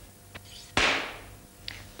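Clapperboard snap sound effect: one sharp crack about three quarters of a second in, fading quickly over half a second, with faint clicks before and after it.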